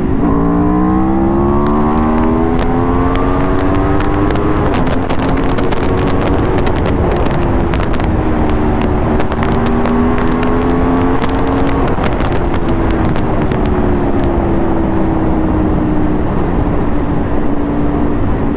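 Aprilia RSV4 RR's 999 cc V4 engine under hard acceleration from about 90 to over 160 km/h. The revs climb for about four seconds and then the pitch steps down twice with upshifts, once about four seconds in and again about seven seconds in. The revs climb slowly again, then fall over the last six seconds as the bike slows, with loud wind rush on the helmet-cam microphone.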